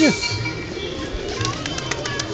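Feral pigeons cooing, after a person's voice trails off right at the start, with a few light clicks near the end.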